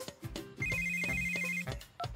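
Mobile phone ringing: a rapid electronic trill that starts about half a second in and lasts about a second.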